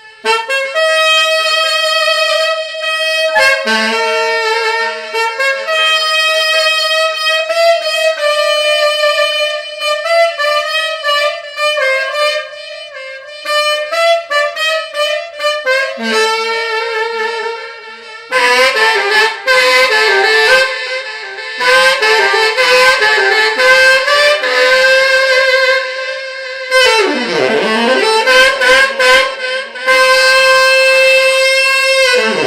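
Cannonball tenor saxophone with a JodyJazz mouthpiece playing an improvised solo: long held notes at first, then from about eighteen seconds in faster, busier runs, with a deep swooping bend down and back up near the end.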